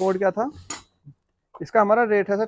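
A man talking in short phrases, broken by one sharp click a little under a second in and a pause of about a second before the talk resumes.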